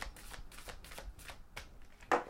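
Deck of tarot cards being shuffled by hand, a quick run of crisp card slaps about four a second that dies away shortly before the end.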